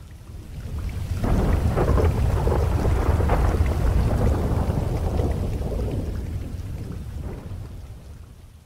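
A long roll of thunder over rain. It swells about a second in and slowly fades away near the end.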